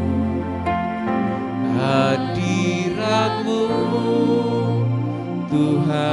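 Church worship music: singers' voices on microphones holding long notes, some with vibrato, over electronic keyboard accompaniment.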